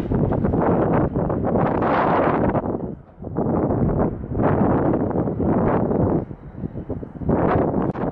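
Wind buffeting the microphone in irregular gusts, over the sound of a TransPennine Express Class 185 diesel multiple unit running slowly into the platform. The wind drops out briefly about three seconds in.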